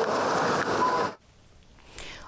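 Supermarket background noise, a steady hubbub with a short beep a little under a second in. It cuts off abruptly just after a second into near silence.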